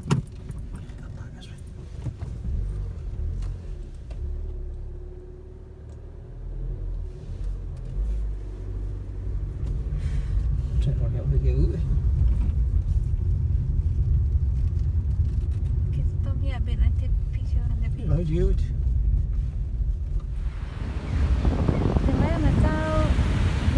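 Car engine and road rumble heard inside the cabin as the car drives slowly, getting louder about a third of the way in, with quiet voices now and then. Near the end it gives way to the wash of waves and wind.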